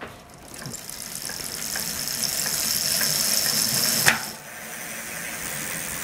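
Bicycle wheel spun by hand, its hub and tyre giving a steady high whir that builds as the wheel speeds up, then a sharp knock about four seconds in, after which it keeps spinning more quietly.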